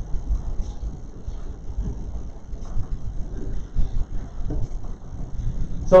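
Uneven low rumble of room noise picked up by the lectern microphone, with small irregular bumps and no clear tone or rhythm.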